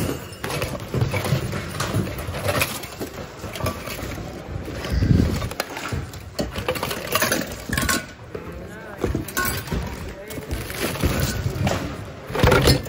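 Hands rummaging through a bin of mixed secondhand goods: plastic bags rustling and hard items knocking and clinking against each other, with indistinct voices of other shoppers in the background.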